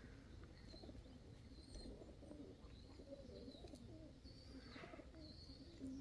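Faint, low cooing of domestic pigeons, with a few faint high chirps from small birds.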